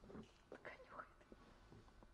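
Near silence: quiet room tone with faint whispering in a few short bits.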